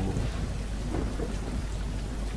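A steady low rumble with an even hiss, the constant background noise bed under the narration.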